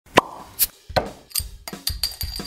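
A run of four sharp, evenly spaced pops, a little over two a second, with a short pitched note near the end, as a produced intro sound effect.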